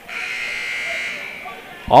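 Gymnasium scoreboard horn sounding once, a steady buzz lasting about a second and a half, signalling the end of a timeout.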